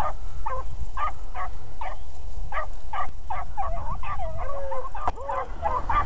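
A pack of beagles baying on a rabbit's track: short, high barks from several dogs overlapping a few times a second, thickening into a quicker run of yelps about four seconds in.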